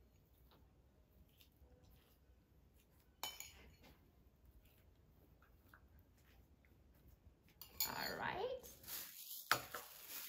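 A spoon clinking and tapping lightly against a bowl as sauce is spooned onto raw sliced beef, with one sharper clink about three seconds in and louder handling noise near the end.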